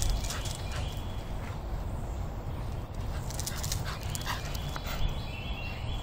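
A dog making short, high vocal sounds during play, including a thin whine near the middle, over a steady low rumble.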